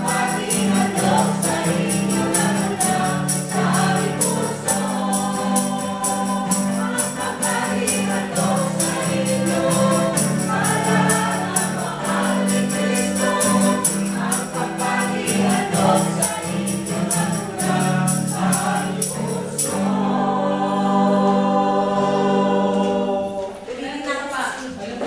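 Mixed choir of men and women singing a gospel worship song to strummed acoustic guitar, with a tambourine keeping a steady beat. About 20 seconds in, the rhythm stops and the voices hold a long final chord.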